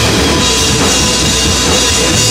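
A live rock band playing loudly: drum kit, electric bass and electric guitar together, in a steady, dense wall of sound.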